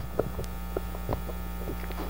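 Steady electrical mains hum from the public-address system, with a few faint clicks as a handheld microphone is passed from one person to another.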